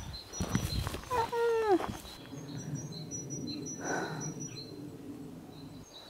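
Garden ambience: small birds chirping in short, repeated high notes over a steady low hum. A brief, falling, voice-like call sounds about a second in.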